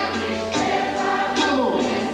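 Live band music: a woman singing over electric keyboards and a drum kit.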